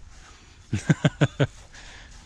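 A man laughing briefly: a short run of about five quick "ha" pulses about a second in.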